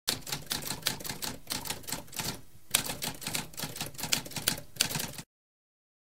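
Typewriter keys typed in quick runs of sharp clacks, with a short pause about halfway through. The typing stops suddenly a little before the end.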